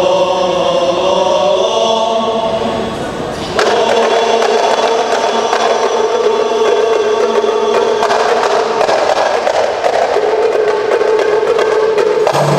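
Rebana ensemble: men's voices singing a held chord together, joined about three and a half seconds in by rapid, dense beating of rebana frame drums under the continuing song.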